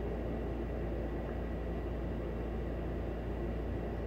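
Steady low room hum with a faint hiss, unchanging throughout.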